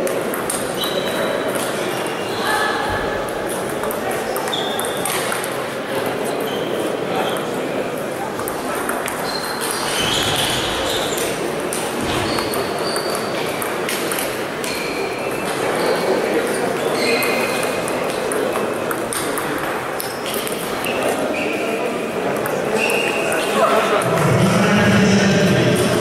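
Table tennis balls clicking off rackets and tables in quick, irregular rallies from several tables at once, over a steady murmur of voices echoing in a large sports hall.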